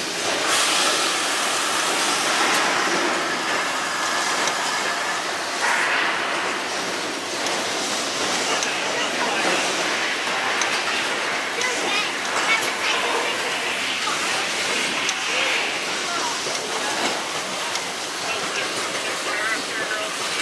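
Simulated earthquake effects in a studio-tour attraction: a steady, loud rushing and hissing noise that runs on without a break, with a few sharp knocks scattered through it.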